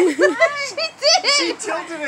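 Young women's high voices laughing and calling out excitedly, overlapping, with no clear words.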